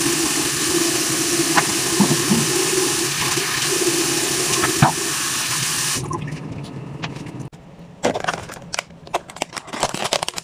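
Tap running steadily into a bathroom sink, cutting off abruptly about six seconds in. A few light clicks and knocks follow near the end.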